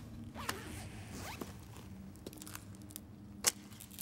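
Close handling noises, cloth rustling and scraping, over a low steady hum. A single sharp click about three and a half seconds in is the loudest sound.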